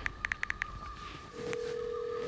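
Smartphone call sounds: six quick short beeps in a row, then, a little over a second in, a steady low tone from the phone that holds on. It is the phone redialling and reaching voicemail, the tone being the cue to leave a message.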